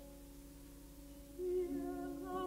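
Classical vocal duet recital with piano, played back from reel-to-reel tape. A soft held chord fades away, then a singer's voice comes in about one and a half seconds in.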